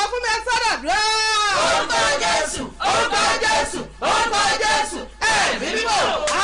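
A woman praying aloud in loud, shouted phrases, some drawn out into long held vowels.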